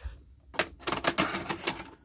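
VHS cassette being pushed into a VCR's front slot: a quick run of hard plastic clicks and rattles, starting about half a second in and lasting a little over a second.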